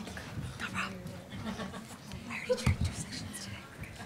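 Indistinct voices murmuring in a large hall, over a steady low hum that fades out about three seconds in. A few short knocks and bumps come through, the loudest about two and a half seconds in.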